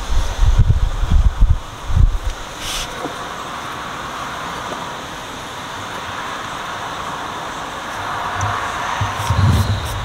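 Dull low thumps in the first two seconds, then steady background noise with faint handling sounds as a jalapeño is rolled in a spring roll wrapper on a wooden cutting board. A low hum rises near the end.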